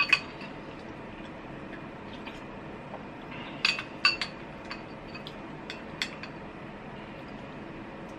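Ceramic soup spoon clinking against a glass bowl while stirring and scooping soup. There is one sharp clink at the start, a quick cluster of clinks about three and a half to four seconds in, then a few lighter taps.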